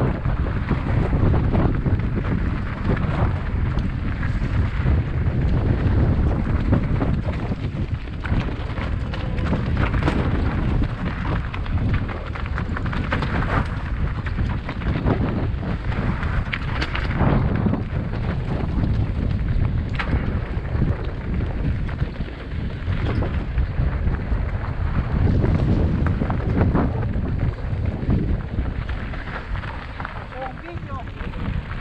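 Mountain bike descending a loose, rocky trail: a steady rush of wind over the helmet camera's microphone, with tyres crunching over stones and frequent clatters and knocks as the bike hits rocks.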